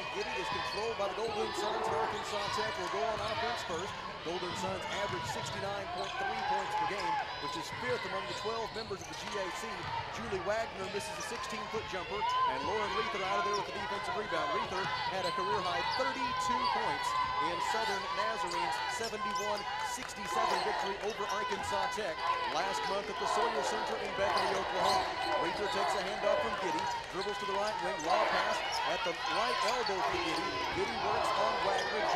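A basketball bouncing on a hardwood gym court during play, with players' and spectators' voices in the hall.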